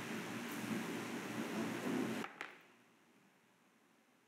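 Faint steady room noise, which cuts off suddenly to dead silence a little past two seconds in.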